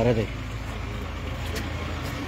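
A man's voice breaks off at the start, then a steady low outdoor rumble continues with no speech.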